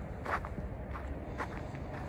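Footsteps of a person walking at an even pace, about two steps a second, over a steady low rumble.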